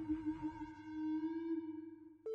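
A single held electronic tone in the backing music, steady in pitch, slowly fading out near the end.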